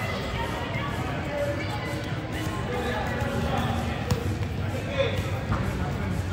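Busy indoor sports hall with indistinct background voices and occasional soft knocks of soccer balls being touched and dribbled on artificial turf.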